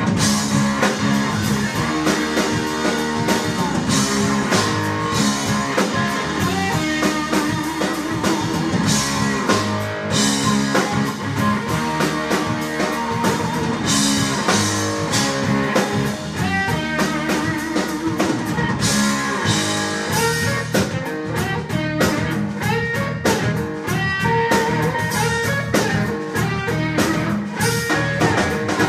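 Live blues-rock trio playing an instrumental groove: electric guitar lead over bass guitar and drum kit, with repeated cymbal crashes.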